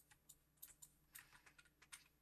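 Faint, irregular clicking at a computer, about eight clicks in two seconds, over a low steady hum.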